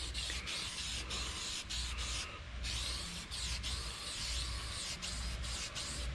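Aerosol can of CoverAll high-gloss tire dressing spraying onto a tire: a steady hiss broken by brief pauses, with a longer pause a little past two seconds in.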